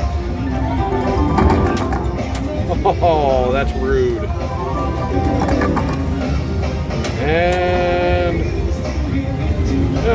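Casino floor din: slot machines playing electronic music and jingles over background chatter. Two short pitched sounds glide through it, one about three seconds in and a longer one of about a second near seven seconds in.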